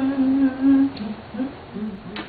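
A woman humming: one long held note, then a few short hummed notes.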